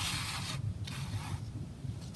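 Hands sliding two craft shaker embellishments across a sheet of paper and setting them down: two short soft scrapes and rustles within the first second and a half, over a steady low hum.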